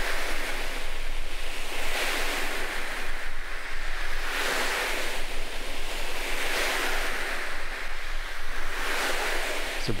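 Two clothes brushes stroked over a cushion, a foley imitation of sea surf: a rushing hiss that swells and fades about every two seconds, like waves breaking.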